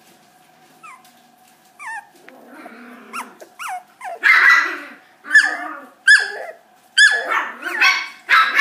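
Miniature schnauzer puppy whining and yelping in short, high-pitched cries that slide down in pitch. The cries are faint at first and become a run of loud yelps about a second apart from halfway on.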